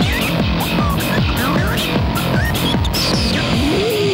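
Live band music: drums with a cymbal pulse of about three strokes a second, many low pitch-dropping hits, and squealing gliding effect sounds over the top. Near the end a note slides upward.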